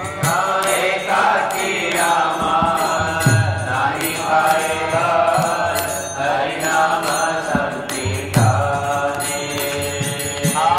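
Devotional kirtan: Bengali Vaishnava bhajan sung with sustained melodic lines, a drum giving a few deep strokes and hand cymbals ticking out a steady beat.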